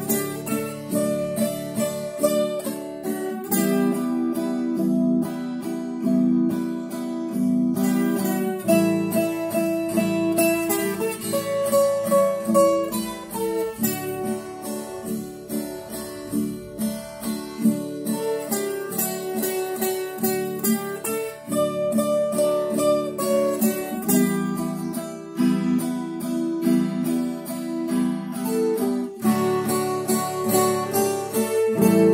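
Viola caipira music: a melody picked in repeated notes over strummed accompaniment chords in D, E minor and A7.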